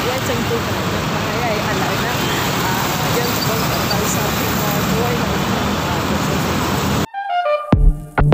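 Steady, dense road traffic noise with a woman talking over it. About seven seconds in it cuts off abruptly, and music with a few sharp drum beats follows.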